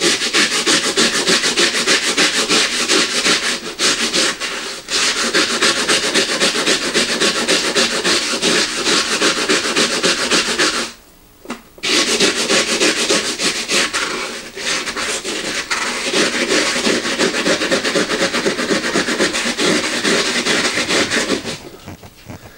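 Skoy Scrub cloth scrubbed hard in rapid back-and-forth strokes over the burnt-on coffee on a drip coffee maker's warming plate, a dense, rough rubbing sound. It stops for about a second near the middle, then starts again.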